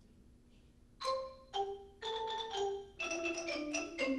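A xylophone ensemble starts playing a canon about a second in. Two separate struck notes are followed by a quicker run of overlapping mallet notes that ring briefly.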